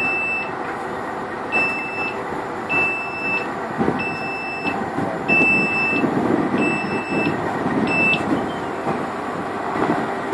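A crane's warning beeper sounding a steady high beep about once every second and a quarter, about seven times, stopping a little after eight seconds in. Under it a crane's diesel engine runs steadily.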